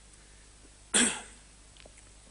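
A single short cough about a second in, against faint room tone.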